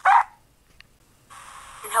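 A single short dog bark, the signal that ends an answering-machine greeting and stands in for the beep.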